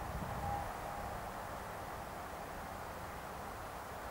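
Steady low rumble of distant motorway traffic, with two faint brief tones near the start.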